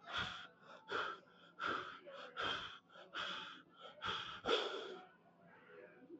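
A weightlifter taking a quick series of about seven sharp, forceful breaths, roughly one every 0.7 seconds, while standing under a heavy barbell and bracing to squat. The breaths stop about five seconds in.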